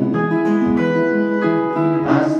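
Acoustic guitar and electric guitar playing an instrumental passage without singing, with long held notes that change pitch a few times.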